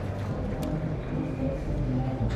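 Outdoor archery-venue ambience: a low steady rumble with faint background music and one soft click about two-thirds of a second in.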